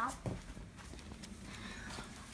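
Faint footsteps on paving slabs, with a soft thump just after the start.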